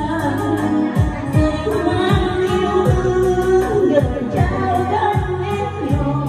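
A woman singing into a microphone over amplified music with a steady drum beat.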